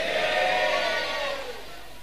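Congregation answering a prayer with a faint, drawn-out chanted "amin", one long vowel that rises and falls in pitch and fades out near the end.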